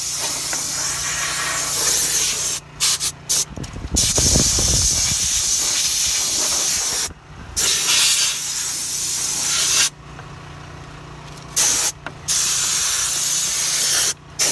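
Compressed-air blow gun hissing as it blows crumbs out from between the car seats, in long blasts broken by trigger releases: a few quick bursts about three seconds in, a short break near seven seconds, and a stop of about two seconds around ten seconds in. A low rumble sounds about four seconds in.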